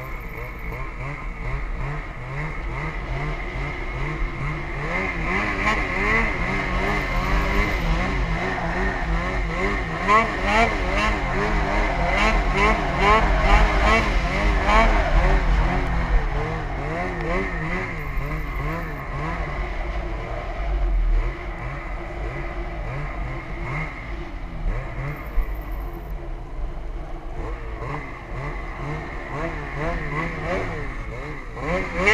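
Snowmobile engine running under load, heard from on board. Its pitch rises and falls constantly with the throttle, and it is loudest about midway through.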